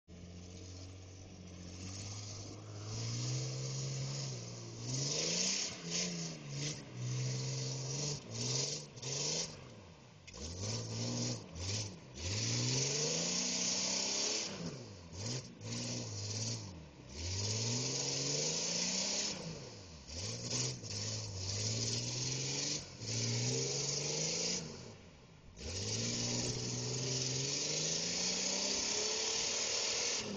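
An SUV engine revving up and falling back again and again, roughly every two seconds, as the vehicle sits stuck in deep mud with its wheels spinning. A loud hiss cuts in and out over the engine.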